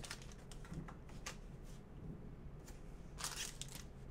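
Faint handling of a foil trading-card pack and the cards inside it: a few brief crinkles and slides, the loudest a rustle about three seconds in.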